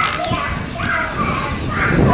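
A young child talking, over steady low street noise.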